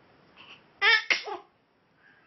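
Newborn baby sneezing: a short, high-pitched burst in two quick parts about a second in.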